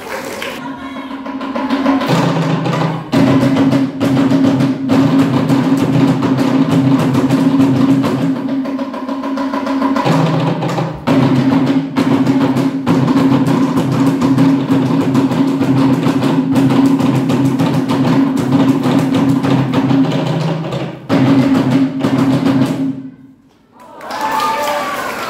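Live music with steady rhythmic drumming over a low sustained note, accompanying dancers. It stops abruptly just before the end.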